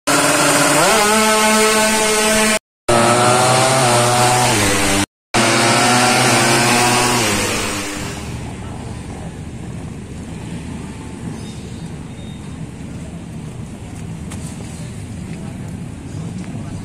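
A drag-racing motorcycle's engine is revved hard and held at high revs, its pitch climbing in the first second, with two brief dropouts where the sound cuts out. After about eight seconds it fades away to a quieter, steady background of outdoor street noise.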